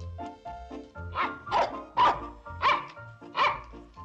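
A dog barking about five times, sharp and loud, starting about a second in: it is barking for its dinner, which hasn't been put out. Light background music plays under it.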